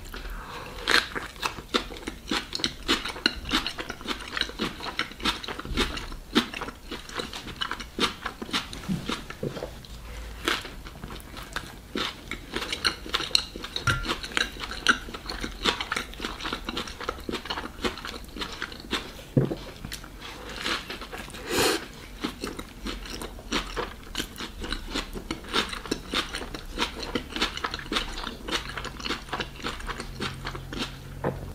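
Close-miked eating of a pork shashlik rolled in flatbread: a bite at the start, then steady chewing full of small wet clicks and crunches.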